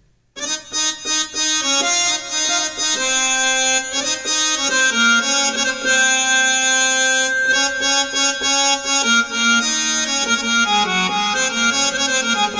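Roland XPS-30 keyboard playing its harmonium patch: a one-hand melody of held, reedy notes moving from note to note, beginning about half a second in.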